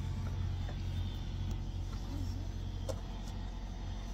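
Steady low hum of a semi-truck's engine running, heard from inside the cab, with a few faint clicks.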